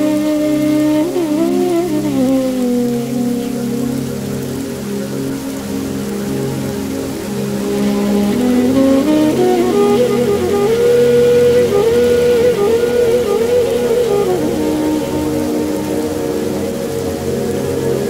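Slow, calm flute melody with gliding, wavering notes over a sustained drone, mixed with the steady patter of rain.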